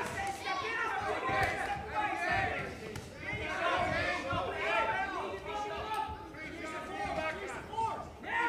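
Several voices shouting over one another in a large hall, supporters and cornermen calling out to the boxers during an amateur bout.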